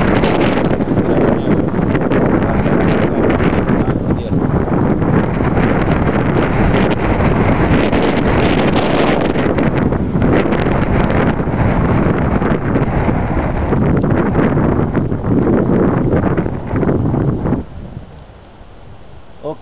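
Wind buffeting the microphone: a loud, gusting rumble that drops away suddenly near the end.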